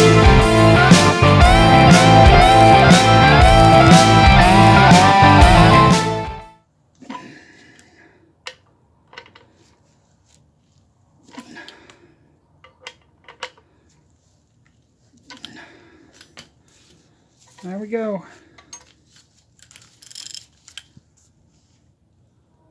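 Loud rock music with electric guitar and a steady beat, stopping abruptly about six seconds in. After that there are only faint scattered clicks and taps and a brief wavering squeak near the end.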